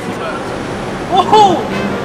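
Steady city street traffic noise, with a man's loud surprised 'Whoa!' about a second in.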